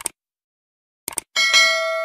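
Subscribe-button animation sound effect: a quick double mouse click at the start, another double click about a second in, then a bright notification bell ding that keeps ringing.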